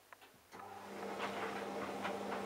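Hotpoint Aquarius+ TVF760 vented tumble dryer mid-cycle. The drum is briefly stopped and near silent, then about half a second in the motor starts again with a steady hum and the running noise builds up as the drum turns.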